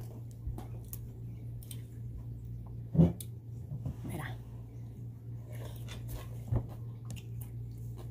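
Close mouth sounds of a person eating chilaquiles (sauced tortilla chips) by hand: chewing with small scattered clicks. There is one sharp knock about three seconds in, the loudest sound, and a smaller one a few seconds later, over a steady low hum.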